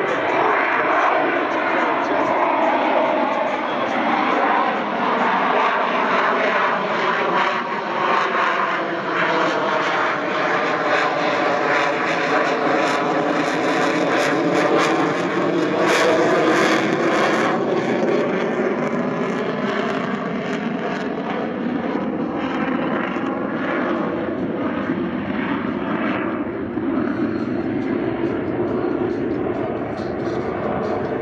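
F/A-18F Super Hornet's twin F414 turbofan engines running through a pass overhead, a steady loud jet noise that is loudest around the middle of the pass and eases off slightly toward the end.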